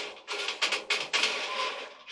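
Metal clicks and rattles as a clothes dryer's coiled heating element is handled and pressed into its sheet-metal heater housing. They come as a quick, uneven run of sharp taps.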